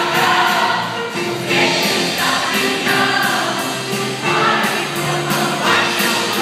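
A large mixed group of men and women singing together over a recorded backing track with a steady beat.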